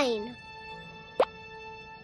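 Soft cartoon background music with steady held notes. About a second in, a short, quick upward-sliding blip sound effect.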